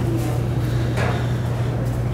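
A steady low hum, with a faint light clink of a metal ladle against a ramekin about a second in as batter is ladled out.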